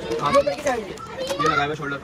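Indistinct speech: voices talking, with no clear words.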